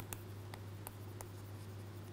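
Faint, irregular taps and scratches of a stylus handwriting on a tablet screen, over a steady low electrical hum.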